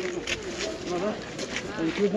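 Indistinct talking from people close by, too unclear to make out, over the general background noise of a busy open-air market.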